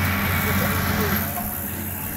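Tractor engine running steadily with a low hum. It is loudest for about the first second and then eases off. Faint voices are heard behind it.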